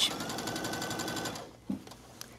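Brother sewing machine running steadily, edge-stitching folded bias tape onto fabric: rapid even needle strokes over a constant motor whine, stopping about a second and a half in.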